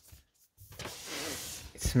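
A person sniffing in through the nose, taking in the new-laptop smell: a steady breathy hiss that starts about half a second in and lasts about a second.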